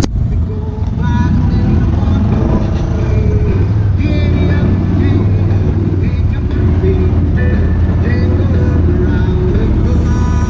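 Side-by-side utility vehicle's engine running steadily at low parade speed, a loud continuous low rumble, with people's voices over it.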